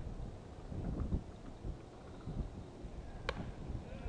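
Wind rumble on the microphone over field ambience, with a single sharp crack about three seconds in: a softball bat hitting the ball for a base hit.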